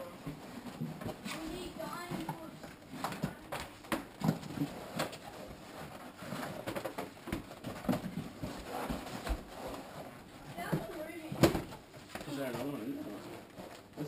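A large cardboard box being tilted, shaken and handled so its contents slide out: irregular scraping, rustling and knocks of cardboard, with one sharp knock, the loudest, near the end. Low voices talk over it.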